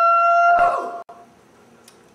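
A man's high falsetto cry held on one steady note, breaking off about half a second in and trailing away over the next half second.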